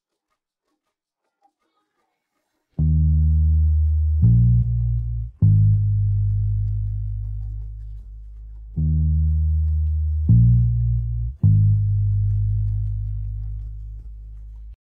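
An isolated bass line, the bass stem split out of a mixed song by iZotope RX 11's Music Rebalance: low, sustained bass notes in two phrases of three, starting about three seconds in.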